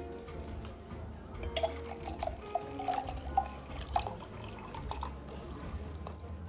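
White wine glugging out of a bottle into a wine glass: a run of irregular gurgles starting about one and a half seconds in and lasting about three seconds, over background music.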